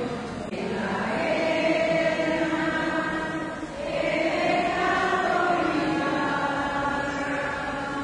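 Choir singing a slow church hymn in long held notes. A new phrase begins about half a second in and another near four seconds.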